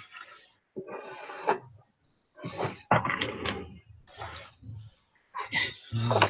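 Hands squeezing and scraping a damp, sand-textured bath bomb mixture of baking soda and citric acid around a stainless steel mixing bowl, in four or so short, irregular bursts.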